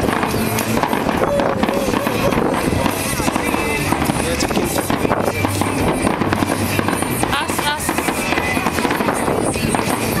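Aerial fireworks bursting in quick succession, a dense mix of bangs and crackling, with onlookers' voices mixed in.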